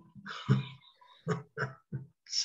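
A man chuckling softly in a few short, separate bursts.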